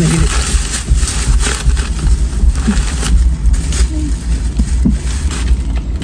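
A plastic shopping bag rustling and crackling as it is handled close to the microphone, heaviest in the first couple of seconds, over a steady low rumble.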